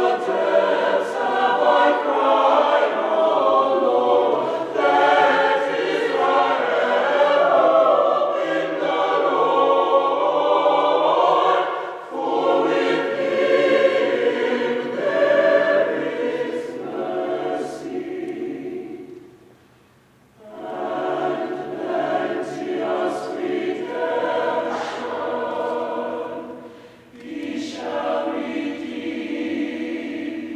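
Mixed choir of men's and women's voices singing unaccompanied in sustained harmony. The singing stops for a brief near-silent pause about two-thirds of the way through, then comes back in, with a shorter break near the end.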